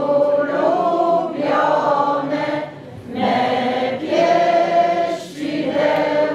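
A small group of voices singing a Christmas carol together in held notes, with a short breath between phrases about three seconds in.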